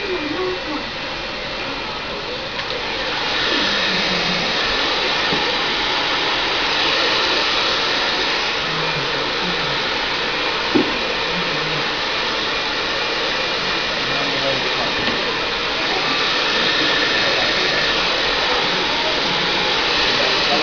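Handheld hair dryer blowing steadily, stepping up louder about three seconds in, with faint voices underneath.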